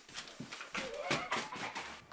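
A man's excited wordless vocal noises over a quick run of shuffles and knocks from his shoes as he pulls them on.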